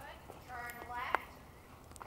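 A pony's hoofbeats on soft indoor-arena footing, with a sharp click about a second in. A brief high-pitched voice is heard in the middle.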